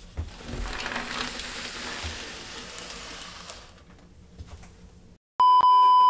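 A soft scratchy rustle for about the first three and a half seconds. Near the end comes a loud, steady single-pitch beep, the TV test-card tone, broken by a few glitch crackles and cut off suddenly.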